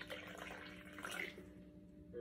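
Water being poured: a faint trickle that dies away after about a second and a half.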